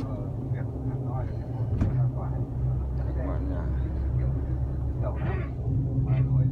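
Steady low drone of a bus engine and running gear, heard from inside the passenger cabin.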